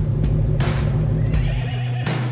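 A horse whinnying over a deep, steady low drone, as in a dramatic film soundtrack.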